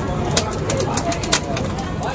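Corn cobs roasting on a wire grill over a gas burner: a steady burner noise with scattered clicks and crackles as the cobs are turned on the metal grate, with voices in the background.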